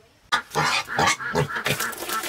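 Two young pigs calling loudly while mash is ladled into their feed bucket. The calls start suddenly about a third of a second in and come as a quick run of breaking, pitched cries.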